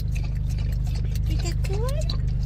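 A dog laps water from the trough of a handheld travel water bottle, making small irregular clicks, over the steady hum of the car's idling engine. A short rising voice sounds near the end.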